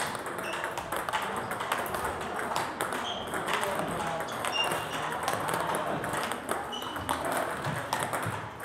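Table tennis balls clicking in quick succession: balls bouncing on the table and struck with a racket in a fast backhand drive drill against backspin feeds, with a few brief ringing pings.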